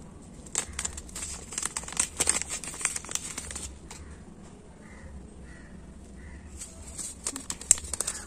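Crinkling and rustling of a foil seed packet being handled, in clusters of quick crackles over the first few seconds and again near the end. Faint bird chirps in the quieter stretch between.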